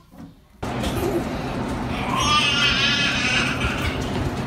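A young child's high-pitched, wavering squeal lasting about a second and a half, over a steady background rush that starts suddenly about half a second in.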